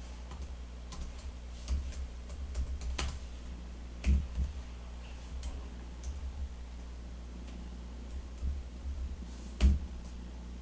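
Computer keyboard keys tapped in scattered single strokes and short runs with pauses between, over a steady low hum.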